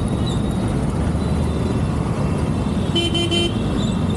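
Steady noise of dense road traffic from a moving motorcycle. A vehicle horn gives a short honk, broken once, about three seconds in.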